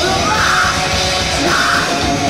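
Death metal band playing live: distorted guitars, bass and drums at full volume, with the vocalist's growled, shouted vocals coming in two bursts.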